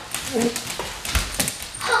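Dogs whimpering and yipping in play while being roughhoused by people, with short knocks and a thump of scuffling in the room.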